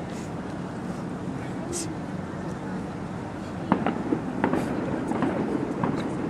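Kettlebell lifters breathing in short hissing exhales over a steady outdoor background hum. A few brief sharp knocks and grunt-like sounds come in the second half.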